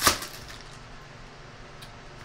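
A trading card pack's plastic wrapper torn open with one short, sharp rip at the start, followed by faint handling noise as the cards are drawn out.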